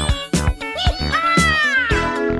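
Upbeat background music with a steady beat, with a cartoon-style sound effect laid over it: a quick rising glide at the start, then a long pitched call falling in pitch through the second half.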